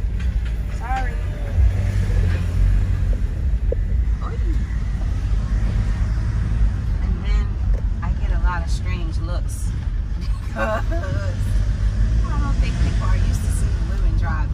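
Steady low engine and road rumble heard from inside the cabin of a moving Hyundai van, with short stretches of voices over it.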